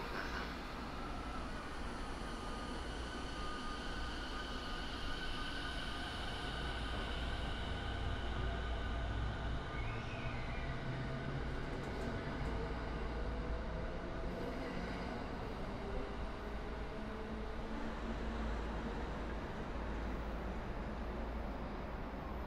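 JR East E217-series electric train pulling out of a station, its Mitsubishi IGBT VVVF inverter whining in pitched tones that climb as it accelerates, over the rumble of wheels on rail.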